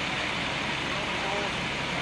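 Fire engines running, a steady low rumble with an even wash of street noise, and a faint voice about two-thirds of the way through.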